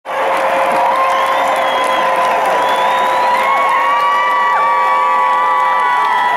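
A large concert crowd cheering and whooping, with several long held shouts standing out above the steady roar.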